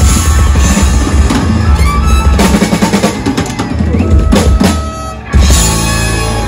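A rock band playing live with the drum kit to the fore, drum rolls and fills over bass and guitars. After a brief drop about five seconds in comes a loud full-band hit.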